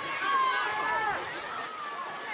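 Indistinct overlapping voices, a background of chatter with no clear words.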